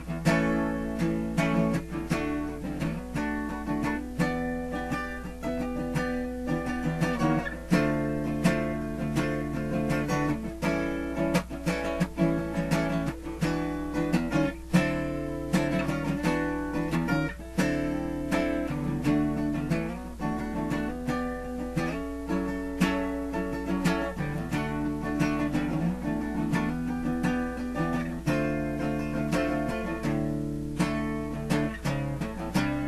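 Steel-string acoustic guitar strummed in chords, an improvised rhythm part with quick repeated strokes and frequent chord changes. A steady low hum sits underneath.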